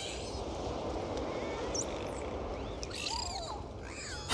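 Sea surf washing steadily onto a beach, with gulls giving a few gliding cries over it.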